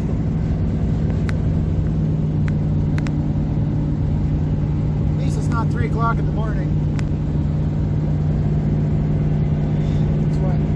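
Steady in-cab drone of a vehicle's engine and tyres at highway speed. A short burst of voice comes about halfway through, and a few small clicks sound now and then.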